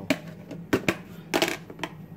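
A few short clicks and knocks with a brief rustle, as packaged food and containers are handled on a kitchen counter, over a steady low hum.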